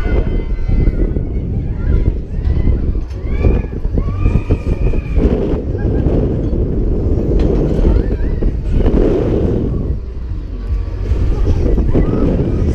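Heavy wind buffeting the microphone of a camera riding on a swinging fairground thrill ride, with riders screaming. A few long screams rise and fall in the middle.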